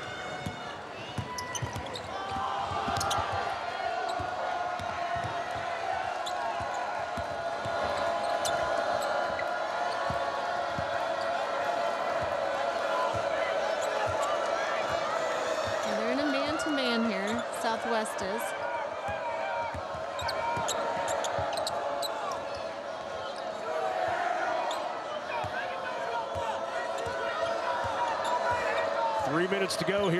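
Basketball dribbled on a hardwood court, with repeated sharp bounces over the steady hum of a large arena crowd. Short squeaks, typical of sneakers on the floor, come around the middle.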